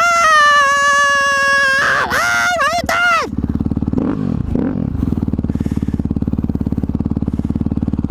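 A man's voice holds a long, high note for about two seconds, then sings a few short swooping notes over a motorcycle engine. After about three seconds the voice stops and the dirt bike's engine runs on steadily at an even pace.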